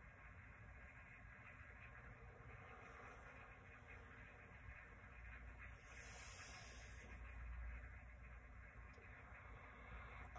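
Near silence: room tone with a faint low rumble and a soft hiss about six seconds in.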